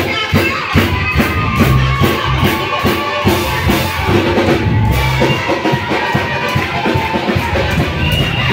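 Live gospel praise music played loud: a drum kit keeps a quick, steady beat under a band, with voices singing.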